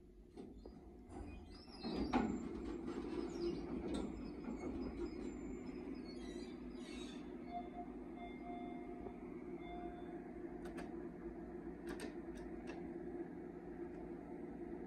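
Elevator car doors sliding open, a rush of sound about two seconds in, followed by a steady low hum while the doors stand open, with a few light clicks late on.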